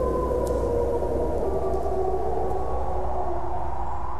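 Several wolves howling together in long, slowly falling tones at different pitches, over a low steady drone.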